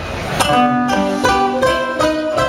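Acoustic guitars begin the song's introduction: a strummed chord about half a second in, then ringing picked notes.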